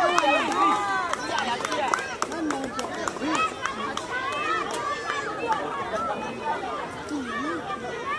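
Several high-pitched children's voices shouting and calling over one another, indistinct, from young players on a football pitch.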